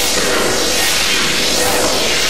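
Heavily effect-processed, distorted logo audio: a loud noisy wash with a sweeping whoosh that rises and falls about every 0.8 s.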